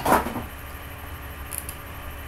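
A short rustling scrape as a small cardboard product box is picked up and handled, followed by a couple of faint clicks about a second and a half in.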